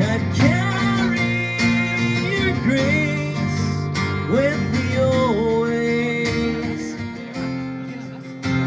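Strummed acoustic guitar with a man singing along live, holding one long note in the middle; near the end the voice stops and the guitar carries on alone.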